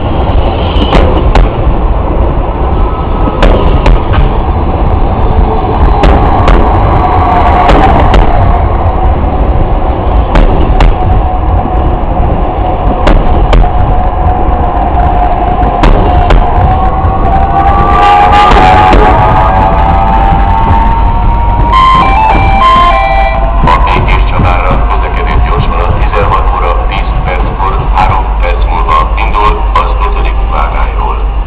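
Passenger train carriages rolling past at low speed: a steady deep rumble with scattered clicks and knocks from the wheels over rail joints. Wavering, squealing tones from the wheels come and go in the middle, and short high squeals follow near the end.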